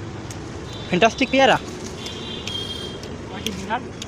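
Street ambience: a steady bed of traffic noise, with a person's voice calling out about a second in and a short high-pitched tone a little after the middle.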